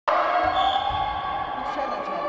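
A volleyball bounced on a wooden gym floor, heard as low thuds in the first second over voices ringing in a large hall.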